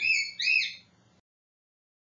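A bird chirping twice: two short, high calls that each rise and then fall in pitch, one right after the other. About a second in, the sound cuts off to dead silence.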